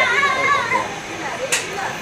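Children's voices, with a high, wavering child's call in the first second, then a single sharp click about one and a half seconds in.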